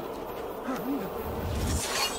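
A low buzzing hum that wavers up and down in pitch, with a deeper rumble building near the end.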